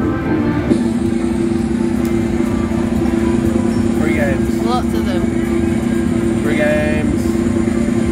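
An American Original slot machine's bonus-wheel spin effect: a steady electronic drone that starts a moment in and holds while the wheel turns, cutting off abruptly at the end as it comes to rest. Casino chatter and short chirps sit behind it.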